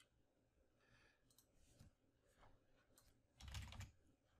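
Faint computer keyboard keystrokes and mouse clicks, sparse and quiet, with a short louder cluster of keystrokes near the end.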